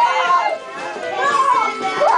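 Children's high voices calling and chattering in a crowded classroom, with music faintly underneath.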